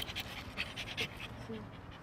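A dog panting rapidly and close, about four to five quick breaths a second.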